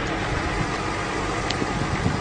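Steady engine noise with a low rumble from a vehicle idling.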